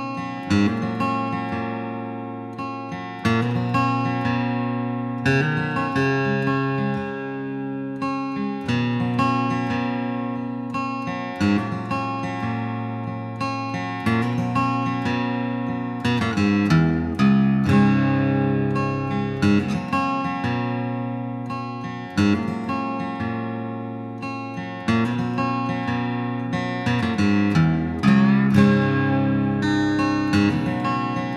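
Background music: acoustic guitar playing strummed and plucked chords that ring and fade, a new chord every second or two.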